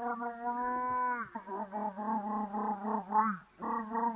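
Border collie yowling in excitement: a long held high cry that drops off at the end, then a run of shorter wavering cries, then another long held cry.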